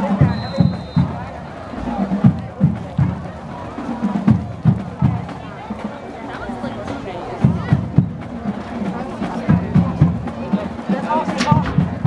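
Drums playing a cadence, with low bass-drum strokes falling in quick clusters every second or two.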